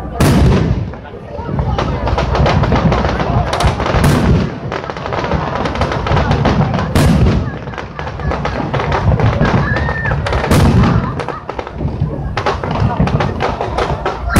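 Fireworks display with aerial shells bursting in quick succession and a dense crackling that runs on between them. Sharp, loud bangs stand out every few seconds, the first right at the start.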